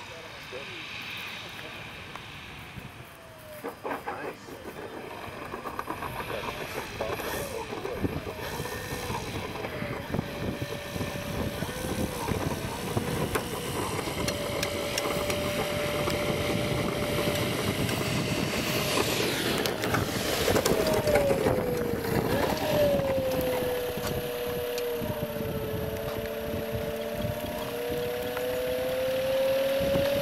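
Electric motor and propeller of a giant RC biplane whining. The pitch holds steady, slides down and back around the middle, then climbs slowly near the end, over a wash of wind noise.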